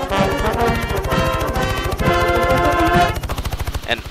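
A short brassy music sting over the rapid, even chop of a helicopter's main rotor. The music fades out about three seconds in, while the rotor pulsing runs on.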